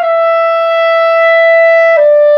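Clarinet holding one long sustained note, stepping down to a slightly lower note at the very end.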